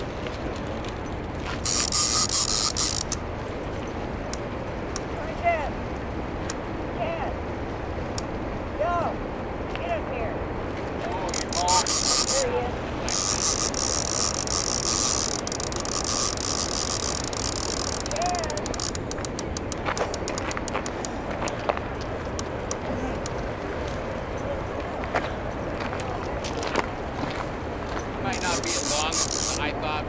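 Heavy sturgeon rod's reel drag buzzing in four bursts as the hooked fish pulls line off, the longest lasting about five seconds in the middle, with a run of quick ratchet clicks after it. A steady rush of fast river water runs underneath.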